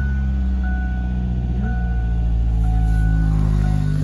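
2006 Kia Spectra four-cylinder engine idling steadily just after being started, with its fresh upstream oxygen sensor fitted.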